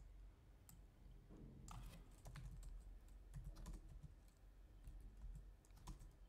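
Faint computer keyboard keystrokes: an irregular run of key presses as a word is typed.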